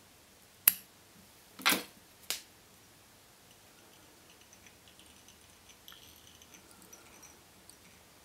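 Small fly-tying scissors snipping off the butts of CDC feathers tied to a hook: three quick, sharp snips in the first two and a half seconds, then only faint handling.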